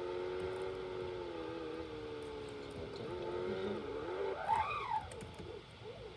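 Video game car engine sound playing through a laptop: a steady engine note at high speed that sags slightly, then swings up and down in pitch in the second half as the car slows sharply.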